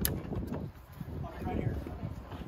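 Faint voices in the background over a low outdoor rumble, with one sharp click at the very start.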